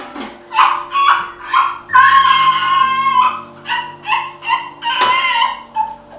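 A high voice singing a melody of short, bending notes, with one long held note about two seconds in, over background music with steady held chords.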